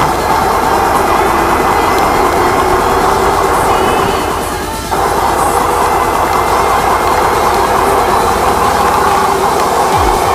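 Steady wind rush and road rumble picked up by the microphone of a small body camera mounted on a moving electric unicycle. The noise dips briefly and comes straight back about five seconds in.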